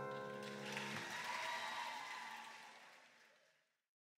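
The final chord of a grand piano rings out and is cut off about a second in, overlapped by faint audience applause that fades out.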